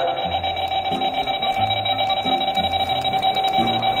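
A steady electronic alarm tone, finely pulsing, with low notes shifting beneath it.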